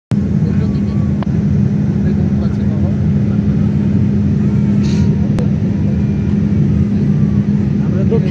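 Steady cabin noise of a jet airliner in flight, heard from a window seat over the wing: an even, loud drone of engines and airflow with a strong low hum. Two faint clicks come about a second in and again a little past five seconds.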